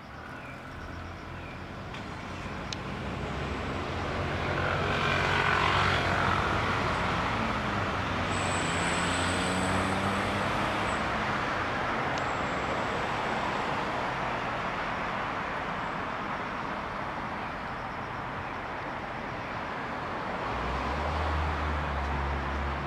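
Drone of a passing engine. It swells over about six seconds, its pitch sliding down as it passes, then slowly fades.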